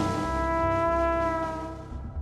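Flugelhorn holding one long, steady note over the jazz band, with the music dying away near the end.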